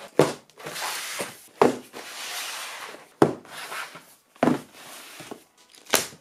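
Cardboard LEGO set boxes being set down on a table and pushed into place: about five knocks, each followed by a rubbing scrape of cardboard on the tabletop.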